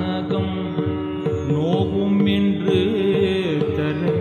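Live Carnatic classical music: an ornamented melody bending and gliding between notes over a steady drone, with repeated mridangam strokes beneath.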